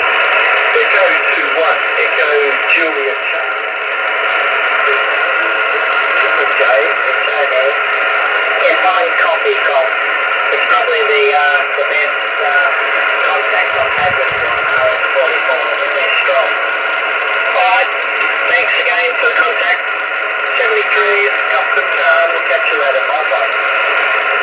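Single-sideband voice from a distant amateur station relayed through the RS-44 satellite and heard on the receiver: a thin, hard-to-follow voice buried in loud steady hiss. The satellite is only about two degrees above the horizon, near loss of signal.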